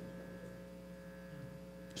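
Faint, steady electrical hum made of several constant tones, with nothing else sounding.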